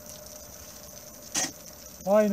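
Metal scoop shovel blade jabbed into snow: one short, sudden crunch about one and a half seconds in, over faint background hiss.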